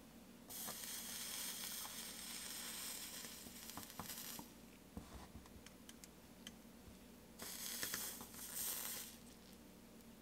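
Flux sizzling as a soldering iron melts solder onto a stained glass seam: a spell of hiss from about half a second in that lasts some four seconds, and a shorter one near the end, with a few small clicks between.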